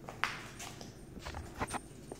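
Harlequin macaw's feet and claws tapping on a glass tabletop as it steps about: a string of sharp, irregular clicks, the loudest about a quarter second in and several more close together in the second half.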